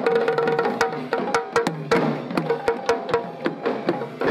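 Traditional Kandyan drums (geta bera) beaten in a fast, sharp rhythm over a held pitched tone, as procession music.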